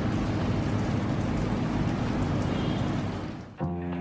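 Steady downpour of rain, an even hiss that fades out about three and a half seconds in. Music starts just before the end.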